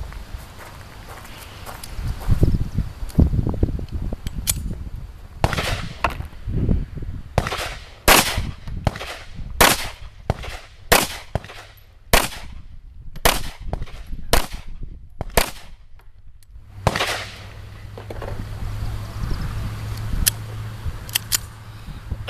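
A 1911 pistol chambered in 7.62x25mm Tokarev firing a long string of sharp shots, roughly one or two a second, starting about four seconds in and running for about thirteen seconds, with two more shots near the end. It is firing handloads stepped up to 6.9 grains of powder to test whether the pistol cycles reliably.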